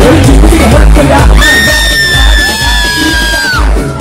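Loud live rap concert music over a PA, with a heavy bass beat pulsing about twice a second. A long, high-pitched scream is held for about two seconds in the middle, then breaks off.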